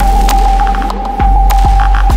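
Instrumental future bass electronic music with no vocals: a deep sub-bass with kicks that drop sharply in pitch, a steady high held tone, upward pitch sweeps and light clicking percussion.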